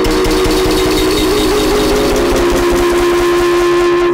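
A short children's-song intro jingle played over itself a great many times at once, merging into a loud, steady wall of sound with a few held tones in the middle.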